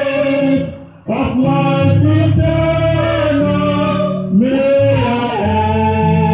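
Two singers singing a gospel hymn in long held notes over an electric bass line, with a short break in the singing just before a second in.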